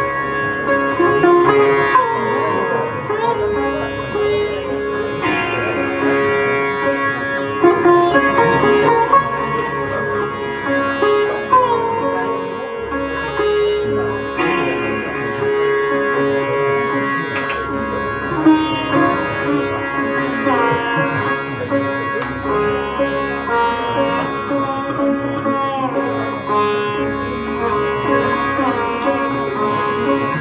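Sitar playing a melodic passage in raga Mohana, plucked notes and slides ringing over a sustained drone of strings.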